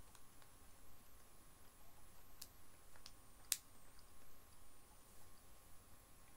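A mostly quiet room with a few faint, short mouth clicks from chewing chocolate, the sharpest about three and a half seconds in.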